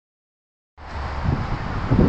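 Silence, then from just under a second in a steady low rumble and hiss of wind on the microphone, with outdoor background noise.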